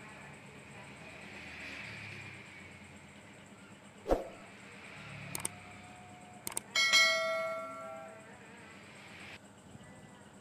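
A subscribe-button sound effect: a couple of quick clicks, then a bell chime that rings and fades over about a second. Earlier, a single sharp knock, as of the metal stator being set down on the table.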